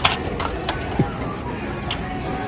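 Busy buffet-hall din: a background murmur of voices with a few sharp clinks of plates and cutlery.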